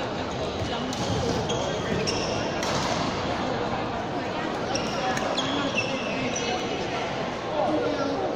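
Badminton mixed-doubles play on an indoor court: rackets striking the shuttlecock in sharp short taps and court shoes squeaking briefly on the court mat, against a steady background of hall chatter.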